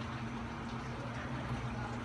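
Dinuguan (pork blood stew) simmering in a steel wok over a gas flame turned up high to dry it: a steady bubbling hiss with a faint steady hum beneath.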